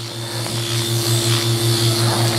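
Power-assisted liposuction cannula running, a low motor hum that pulses several times a second with a steady higher tone over an even hiss.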